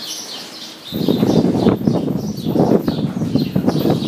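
Small birds chirping repeatedly in a barn. From about a second in they are half covered by a loud, irregular rustling and rumbling noise.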